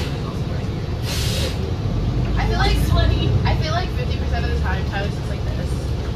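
Inside a New Flyer XD60 articulated diesel bus: a short hiss of compressed air about a second in, then the engine rumble swells from about two seconds in as the bus moves off.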